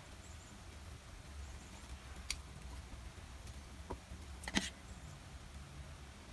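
Faint steady low hum with three short clicks, about two, four and four and a half seconds in, of wooden chopsticks tapping a bowl while lifting noodles.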